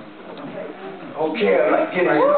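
A man's voice preaching into a handheld microphone, quieter at first and much louder from about a second in.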